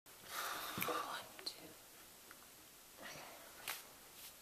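Faint whispering in the first second, followed by short, quiet breathy sounds near the end.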